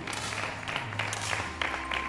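Scattered applause from spectators: many short, uneven hand claps over a low steady hum, with a faint steady tone coming in about halfway through.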